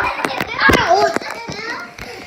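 Young children's high-pitched voices calling out while playing, broken by several sharp knocks.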